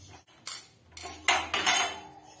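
Metal tools and heater parts being handled on a tile floor: a single knock about half a second in, then a louder clinking clatter lasting over half a second.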